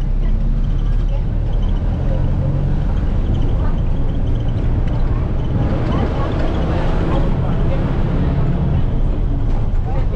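City bus running, heard from inside the passenger cabin: a steady low engine drone with road and rattle noise as it drives, a little busier for a few seconds past the middle.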